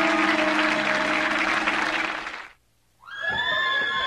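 A dense wash like studio-audience applause, with a held musical chord underneath, cuts off suddenly about two and a half seconds in. After half a second of silence, a high sound with held and sliding pitches begins.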